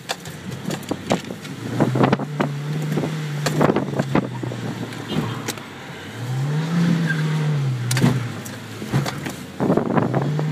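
Toyota Corolla's engine heard from inside the cabin, revving up about two seconds in and then rising and falling again around the seventh second as the car is flicked around cones on a wet skid pan. Frequent sharp clicks and knocks run over it.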